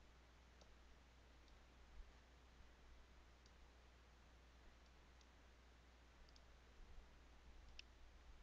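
Near silence with a faint low hum, broken by about seven faint, irregular computer mouse clicks as parts are picked up and dragged; the clearest comes near the end.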